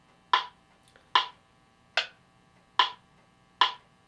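Electronic metronome clicking steadily at 73 beats a minute, five evenly spaced clicks, each with a short bright ring.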